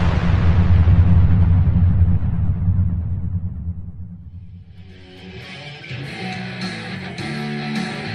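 A loud sound with a low drone fades away over the first four seconds. From about five seconds in, a Schecter Damien Solo Elite electric guitar is played: a run of picked notes and chords.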